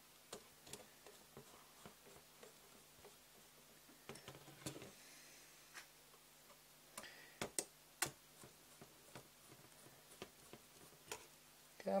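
Faint, scattered light clicks and taps of a hex screwdriver turning M3 bolts into standoffs on a carbon-fibre quadcopter frame, with a few louder clusters of clicks around four and seven to eight seconds in.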